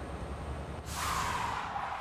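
Cartoon truck sound effects: a low engine rumble, then a hiss that starts about a second in and fades away.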